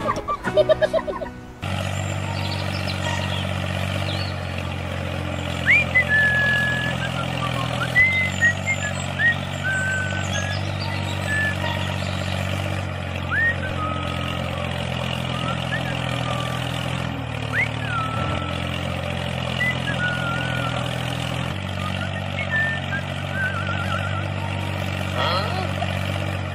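A tractor's diesel engine running steadily at a low idle, starting about two seconds in after a brief snatch of music. Small birds chirp now and then over it.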